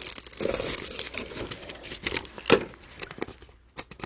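Plastic packaging bags crinkling as bagged cables are handled and set down in a cardboard box, with one sharp knock about two and a half seconds in.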